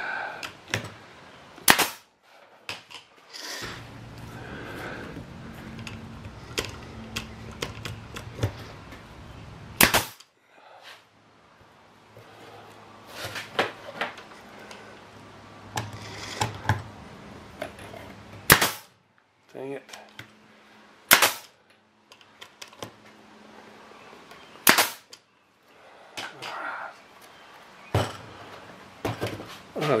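Pneumatic nail gun firing nails into pressure-treated wood boards: about six sharp shots a few seconds apart, with smaller knocks of wood being handled between them. A steady low hum runs under the shots and stops and restarts a couple of times.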